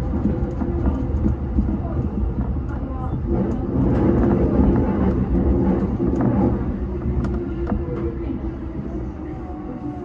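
JR Yokohama Line electric commuter train running into a station, heard from inside the driver's cab: a steady rumble of wheels on rail with a low motor hum, easing off over the last few seconds as it slows along the platform.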